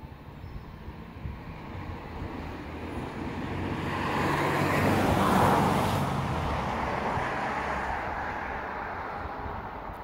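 A road vehicle driving past: engine and tyre noise swells to a peak about five seconds in, then fades away.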